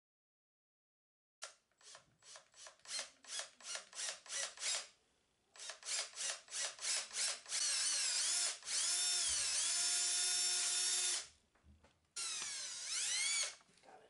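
Cordless drill boring a hole through a wooden board. It starts about a second and a half in with a series of short trigger pulses, then runs steadily with its whine dipping in pitch as the bit bites into the wood. After a brief stop it gives a final shorter run that winds down.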